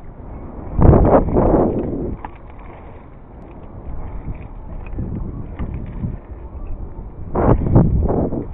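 Wind buffeting a body-worn camera's microphone, in loud rumbling gusts about a second in and again near the end, with a few faint clicks in between.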